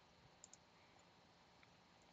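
Near silence with two faint computer-mouse clicks close together about half a second in.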